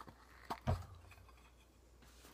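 A click, then about half a second later another click and a dull thump, as a can of dip tobacco is handled and its lid opened.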